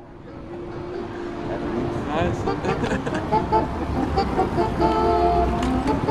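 Outdoor city street sound: indistinct voices of people talking, mixed with the low rumble of road traffic, swelling up over the first couple of seconds.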